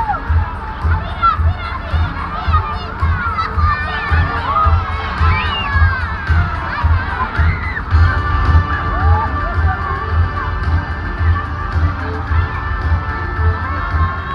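Crowd of children shouting and cheering, many high voices calling out at once, over a low beat repeating about two or three times a second. A few steady held tones join in about eight seconds in.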